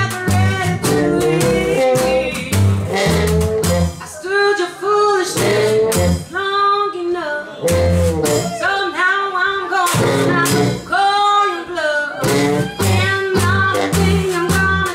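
A small New Orleans jazz band playing a blues: a woman singing over a washboard scraped in rhythm, strummed banjo and a plucked double bass walking underneath.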